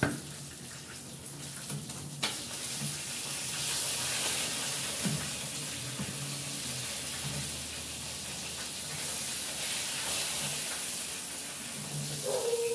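A single knock at the start, then a click about two seconds in and a kitchen tap running water steadily, louder through the middle.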